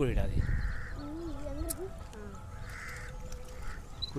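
Crows cawing twice, one short harsh call about half a second in and another about three seconds in, over a steady low wind rumble. A wavering voice is heard briefly between the calls.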